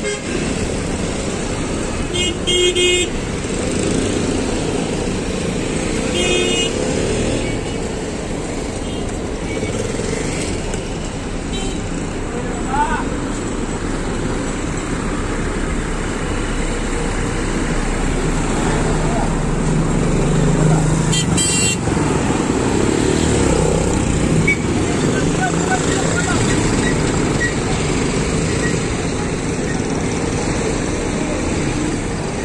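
Busy traffic and engine noise with voices, broken by short vehicle horn toots a few times: about two seconds in, around six seconds and again about twenty-one seconds in.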